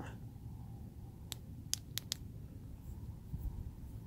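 Four faint, sharp clicks, one about a second in and three in quick succession around two seconds: the Klarus 360X3 flashlight's secondary switch being pressed to cycle up through its brightness levels.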